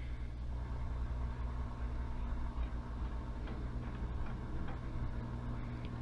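Gradiente STR 800 stereo receiver's speakers giving a steady low hum with faint static while the tuning dial is turned and no station comes in. Its radio section needs repair.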